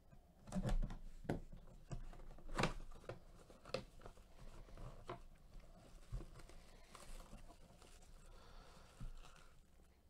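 A small cardboard box being cut open with a blade and unpacked by hand: a series of irregular scrapes and taps of cardboard, loudest in the first few seconds, then a faint crinkle of plastic wrap around the ball near the end.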